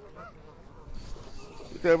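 A flock of Canada geese calling faintly in the background, with scattered honks; a man's voice starts near the end.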